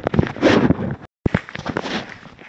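Loud, close crackling and rustling of a handheld camera being handled against its microphone, cut off abruptly just past a second in, then more handling and rustling as a new recording starts.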